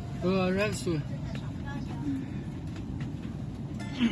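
Steady low hum inside a high-speed train carriage while the train stands at a station, with a short spoken phrase near the start.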